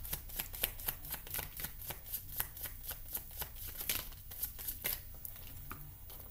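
A tarot deck being shuffled by hand: a rapid, steady run of card flicks and riffles that thins out near the end.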